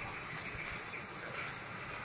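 Low, steady background noise of a small room, with a faint click about half a second in.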